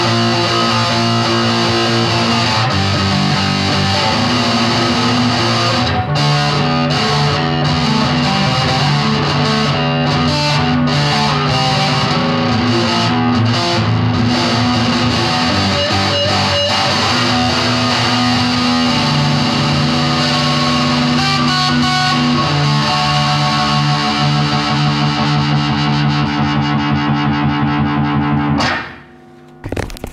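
Distorted electric guitar playing long, sustained chords through an effects unit, loud and steady, changing chord every few seconds. It cuts off suddenly near the end.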